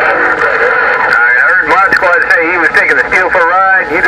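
Another station's voice transmission coming through the speaker of an HR2510 radio on 27.085 MHz: loud, narrow-band and heavily processed voice over steady hiss, too garbled to make out words.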